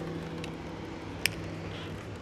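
The last acoustic guitar chord ringing out and fading away as the song ends, with one sharp click about a second in over faint background noise.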